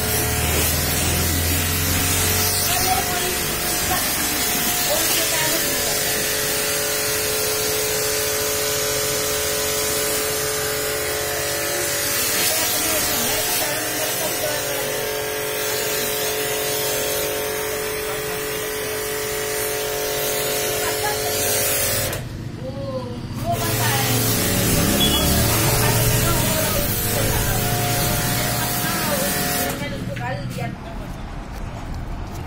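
Pressure washer jet hissing steadily as it sprays a car's bodywork, over the steady hum of the washer's motor. The spray stops for a second or two about two-thirds of the way in, then starts again.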